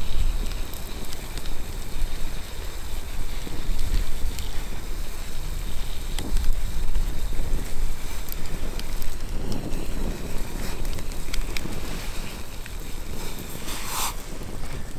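Wind buffeting the microphone in a steady low rumble, with scattered small pops and crackles from a wood campfire.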